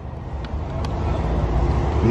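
Low rumble of a motor vehicle running nearby, growing slowly louder.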